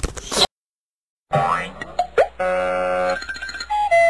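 Cartoon comedy sound effects: a springy boing with a quick rising pitch about two seconds in, then a held buzzy note and a short note that steps down in pitch near the end.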